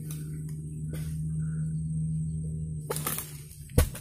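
A cut oil palm fruit bunch hitting the ground with a single heavy thud near the end, after a few faint clicks. A steady low hum runs underneath.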